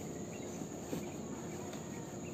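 Soft rustling of cloth as a bag is wrapped in its fabric dust bag, over a steady high-pitched drone.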